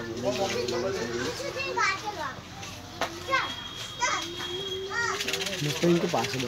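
Several children's voices chattering and calling out over one another, with high rising and falling shouts.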